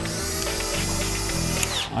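Cordless screwdriver motor running steadily while driving a screw into a loudspeaker cabinet, stopping with a falling pitch near the end.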